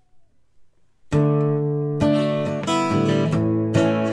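Acoustic guitar: after a near-silent first second, a strummed chord rings out and further chords follow, strummed about every half second to a second, opening the instrumental intro of a song.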